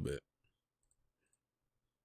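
Near silence with a few faint, tiny computer mouse clicks as the cursor drags an on-screen video player's seek bar back.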